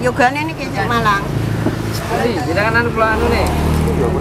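People talking over the low, steady hum of a motor vehicle engine, whose pitch shifts a little about a second in and again near three seconds.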